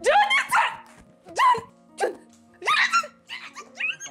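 A woman's excited, wordless squeals: a string of short cries, each rising sharply in pitch, over background music.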